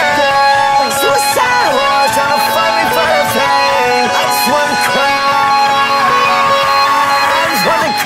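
Telecaster-style solid-body electric guitar playing a lead melody of held notes with bends, over a backing beat with ticking hi-hats.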